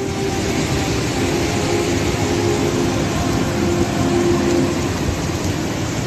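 A mountain river in flood, swollen by a cloudburst upstream: a loud, steady rushing roar of fast, muddy water.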